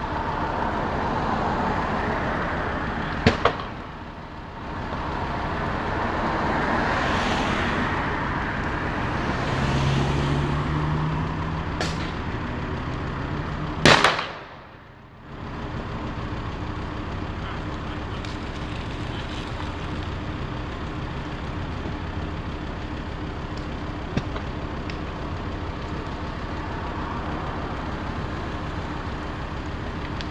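Steady road traffic noise from passing vehicles, with one engine passing about ten seconds in. Two sharp bangs cut through, about three seconds in and, loudest, about fourteen seconds in.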